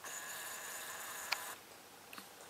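Camcorder zoom motor whirring with a thin high whine for about a second and a half, with a sharp click just before it stops.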